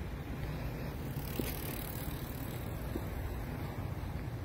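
Steady outdoor background noise with a low rumble, and a bicycle going past on the paved trail; a faint click about a second and a half in.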